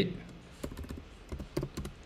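Several quiet, irregularly spaced keystrokes on a computer keyboard as a short terminal command is typed.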